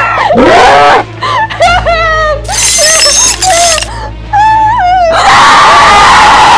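A woman screaming in wavering, high-pitched cries, mixed with a high-pitched monster shriek that rises near the start and a harsh screech in the middle. From about five seconds in, a rough, inhuman grunting growl takes over.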